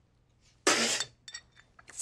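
A mouthful of tea spat out in a sudden spray about two-thirds of a second in, then a few light clinks of porcelain teacups against saucers.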